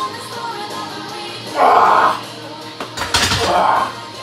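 Pop music playing throughout. About three seconds in comes a single sharp clank as the loaded barbell comes down onto the power rack's safeties on a missed 265 lb bench press.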